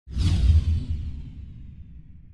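Logo sting sound effect: a sudden whoosh with a deep boom underneath, the hiss falling away quickly while the low rumble fades out slowly.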